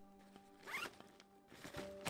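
Backpack zipper pulled in one quick rising zip about three-quarters of a second in, with the pack being handled near the end.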